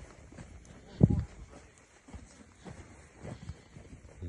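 Footsteps over burned debris, with one heavy low thump about a second in and a few fainter thuds after it.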